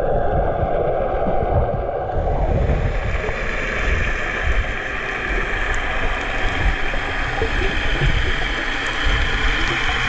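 Muffled underwater rushing and low rumbling picked up by a camera held underwater while snorkeling. About two seconds in, the sound gets a brighter hiss.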